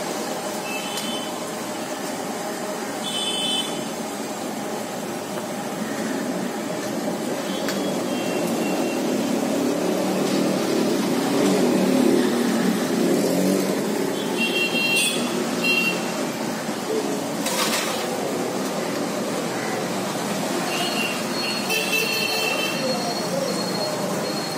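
Busy street traffic: scooter and motorbike engines passing, swelling in the middle, with several short horn toots scattered through. Under it is the sizzle of oil deep-frying bondas in a kadai.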